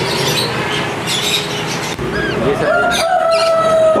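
Many caged pet birds chirping and calling together in a bird shop, a dense chatter of short calls. Near the end a steady held tone comes in and lasts over a second.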